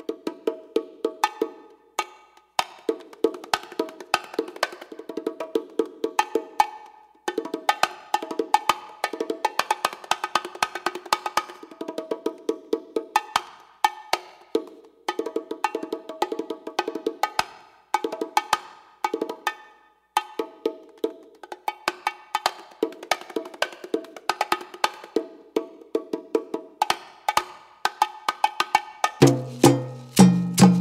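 Solo bongo drums played by hand: quick runs of sharp strikes on two tuned heads, broken by short pauses. Near the end the full salsa band comes in with bass.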